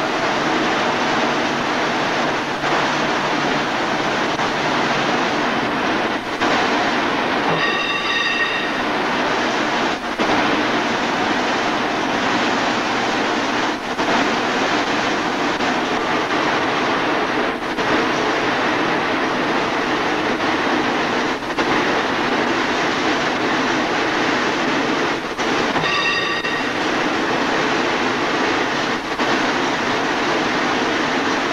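Yarn winding machines running in a mill winding room, a steady dense mechanical clatter with a slight dip about every four seconds. A brief high-pitched whine sounds twice, about eight seconds in and again near the end.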